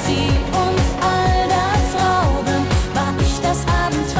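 Schlager pop song: a woman singing a held, wavering melody over a backing with a steady kick-drum beat.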